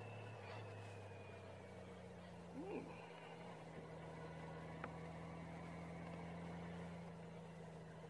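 Honda Gold Wing GL1800 motorcycle engine running at low road speed, a faint steady hum that changes pitch once about two seconds in.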